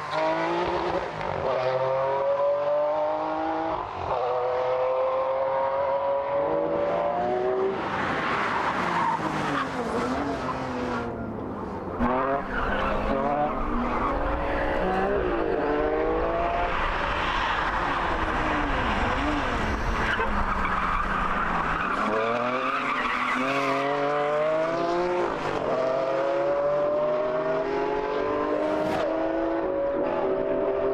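Ferrari Enzo's V12 engine revving hard through the gears, its pitch climbing and dropping back at each upshift. Tyres squeal through the middle stretch, and about two-thirds in the revs fall away under braking and downshifts before climbing again.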